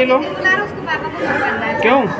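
Speech only: several people talking over one another, their words not clear.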